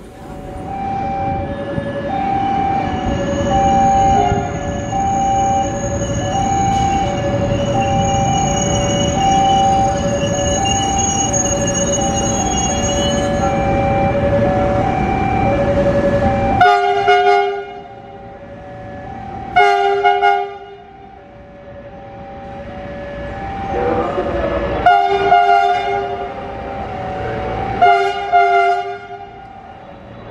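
Horn of an INKA CC 300 diesel-hydraulic locomotive sounding about four separate blasts in the second half as it approaches through the station. Before the blasts there is a steady train rumble with a repeating two-note tone, which stops suddenly.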